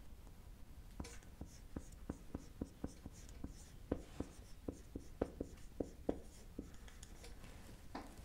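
Dry-erase marker writing a word in capital letters on a whiteboard: a faint string of light taps and short squeaks of the felt tip, one per stroke, stopping about a second and a half before the end.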